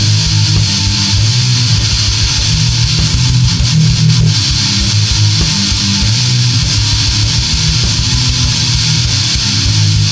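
Instrumental heavy metal with distorted electric guitars over a drum machine's rapid, even kick-drum pattern, and no vocals.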